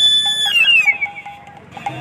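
A loud, high-pitched steady tone with strong overtones that slides down in pitch and dies away about half a second in, leaving faint short tones over outdoor noise.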